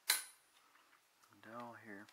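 A single sharp clack of hard flat-pack stair parts knocking together just after the start, dying away quickly. A short, wordless murmured voice follows near the end.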